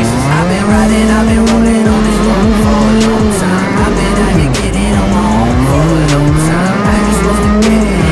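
Shifter kart's two-stroke engine revving hard. Its pitch climbs and drops several times as the throttle is worked over bumpy dirt.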